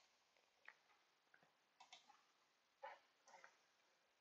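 Near silence with a few faint, short computer mouse clicks, the loudest about three seconds in.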